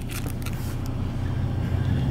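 A steady low background rumble, with a few faint light clicks near the start as the metal card knife is handled.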